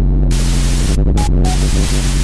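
Electronic noise music: a steady low buzzing drone with loud blasts of static that switch on and off abruptly, and two short high beeps just past the middle.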